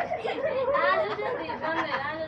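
Several people talking over one another: indistinct chatter.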